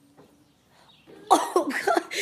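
After about a second of near quiet, a person's voice breaks out in short, loud, cough-like vocal bursts.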